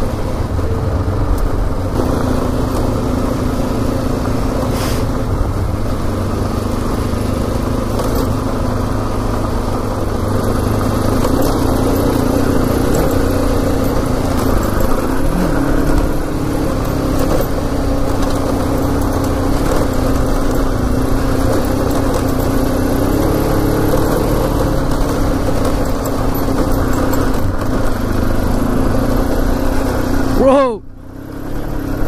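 Kawasaki KLE 500's parallel-twin engine running steadily as the bike rides a rough gravel track, with wind and road noise rumbling underneath.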